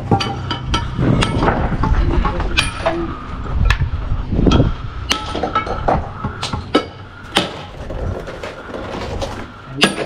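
Irregular sharp clinks and knocks of steel masonry tools against limestone blocks and mortar, each with a short metallic ring.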